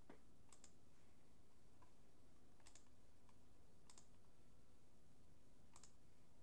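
Near silence broken by several faint, irregularly spaced clicks of computer input at a desk, a couple of them in quick pairs.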